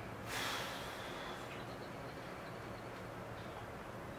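A short, sharp breath out through the nose close to the microphone, about half a second long just after the start, followed by a quiet steady low hum of room tone.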